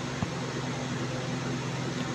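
Steady background hum and hiss with a low drone, and a single short click about a quarter second in, consistent with a computer mouse click into a text field.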